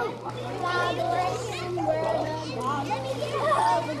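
Children's voices calling and chattering at play, over a steady low hum.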